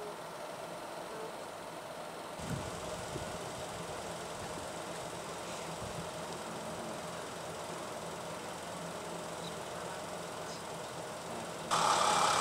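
A vehicle engine idling steadily at low level on a quiet street. Just before the end a much louder vehicle sound starts suddenly as an ambulance drives up.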